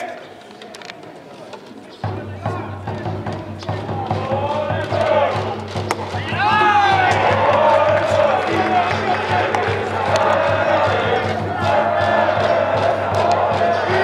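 Cheering section in the stands: music with many voices chanting along, starting abruptly about two seconds in and growing louder around six seconds.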